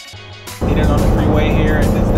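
Background music cuts off about half a second in. It is replaced by loud cab noise from a 2015 Ford F-150: a steady low rumble of road and engine from its 2.7 L twin-turbo EcoBoost V6, pulling a 6,000-pound boat trailer.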